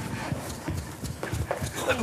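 Footsteps on a hard floor: a few short knocks, about three a second.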